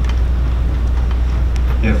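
A steady, loud low hum in a pause in the talk, with faint room noise and a couple of soft clicks. A man says "Yeah" near the end.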